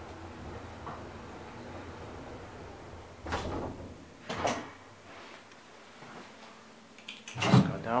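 Old KONE-rebuilt traction elevator car running between floors with a low hum, then two short clunks about three and four and a half seconds in as it stops at the floor, after which the hum ceases.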